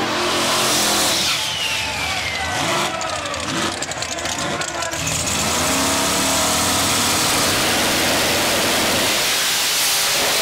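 Drag race car engines at the starting line, revving up and down after a burnout. From about halfway in, the engines run loud and steady as the pair stages, and a car launches near the end.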